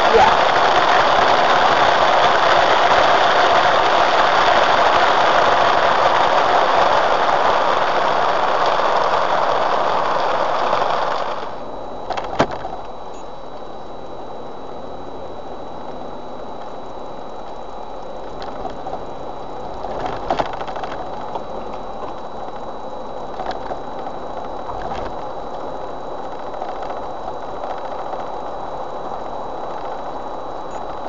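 Rain falling hard on a Jeep Wrangler's roof and windshield with tyres hissing on the wet road, heard through a dashcam microphone inside the cab. About eleven seconds in it cuts to a much quieter night drive: low engine and road noise with a steady faint high whine and a few soft clicks.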